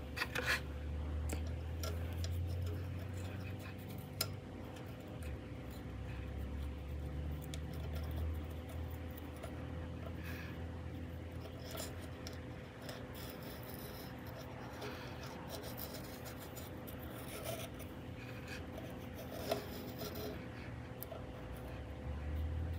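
Faint rubbing and scratching with a few small clicks as fingers press a new rubber O-ring into the groove of a car's oil filter housing, over a steady low hum.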